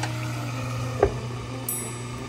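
A glass lid is set on a frying pan of cooking chicken, giving a single short knock about a second in, over a steady low hum.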